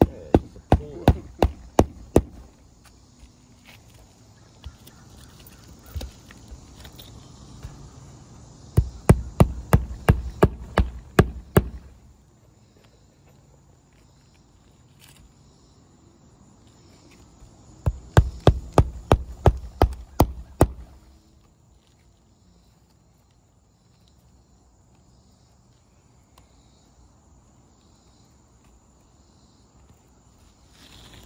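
Claw hammer driving roofing nails into an asphalt shingle, struck from under a lifted shingle tab. Three runs of quick, sharp strikes, about four a second: one ending about two seconds in, one about nine seconds in and one about eighteen seconds in.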